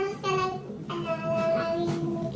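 Music with a high singing voice holding steady notes, sliding between pitches near the start and holding two long notes in the second half.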